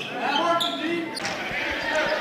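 A basketball being dribbled on a hardwood gym floor.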